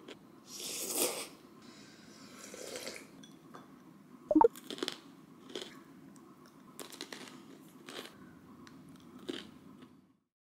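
Close-up eating sounds: chocolate-covered pretzels bitten and chewed, with sharp crunches about every second from about four seconds in, the loudest at about four and a half seconds.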